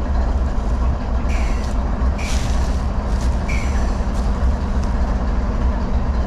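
Norfolk Southern diesel-electric locomotives idling at a standstill: a steady, loud low engine drone, with a few short hisses about one and two seconds in.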